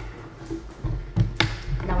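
Light handling noise at a table: a low rumble and two short knocks a little over a second in, then a woman says "Now".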